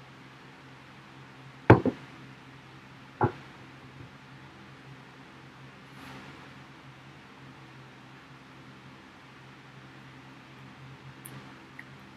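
Stemmed beer glass set down on a table: a sharp knock about two seconds in, a smaller one right after, and another knock about a second and a half later, over a steady low hum.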